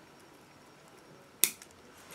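Bonsai scissors snipping a small zelkova twig: one sharp snip about one and a half seconds in, followed by a couple of faint clicks of the blades.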